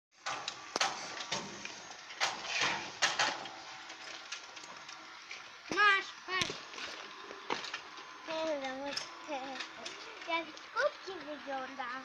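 Faint voices talking at a distance, with scattered sharp clicks and knocks in the first few seconds.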